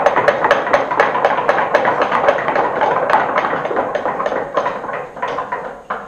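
Audience knocking on wooden desks in applause, many quick knocks overlapping into a dense rattle that fades away near the end. It is the applause for a talk that has just finished.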